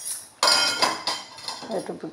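Steel kitchen utensils and vessels clattering: a sharp metal clang about half a second in that rings briefly, followed by lighter knocks.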